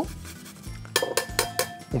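Fresh ginger rubbed against a fine metal rasp grater, quietly at first, then a quick run of several light clinks that ring briefly as the metal grater knocks against the glass bowl.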